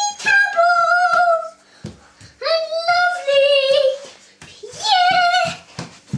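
A young child singing in a high voice, three long held phrases with short gaps between them, over short low thumps.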